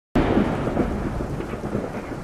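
A thunder-like rumble that starts abruptly and slowly fades, laid over the opening of an edited teaser as a sound effect.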